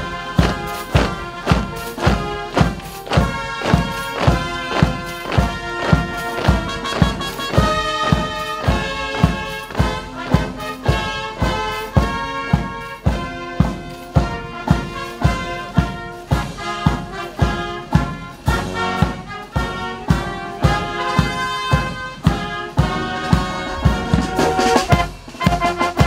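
Brass military band playing a march with a steady drum beat, about three beats every two seconds, that cuts off suddenly at the end.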